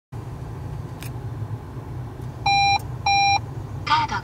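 Two short identical electronic beeps from a Pioneer Carrozzeria car stereo head unit starting up, each about a third of a second long and about half a second apart. A low steady rumble runs underneath.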